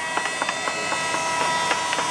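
Woodworking tools on wood: a quick, irregular run of sharp wooden clicks and knocks over a faint steady high hum.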